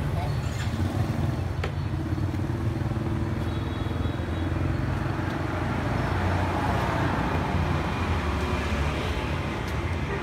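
Steady low rumble of motor vehicle engines, road traffic running nearby.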